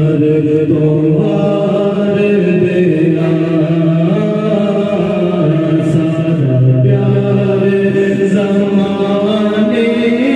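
Devotional zikr chanting: voices holding long notes that step up and down in pitch, running on without a break.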